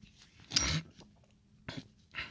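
A sharp click, with faint rubbing between, as a disassembled brake master cylinder and its piston are handled by hand.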